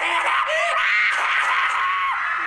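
An audience, mostly high voices, screaming and cheering all at once; the sound breaks out suddenly just before and stays loud throughout.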